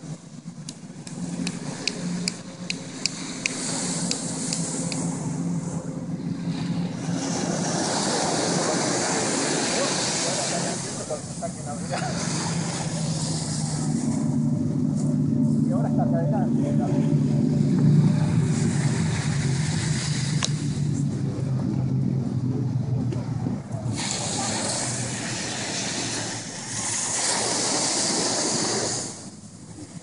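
Surf washing on the beach with wind buffeting the microphone, in slow swells. A run of light clicks comes in the first few seconds.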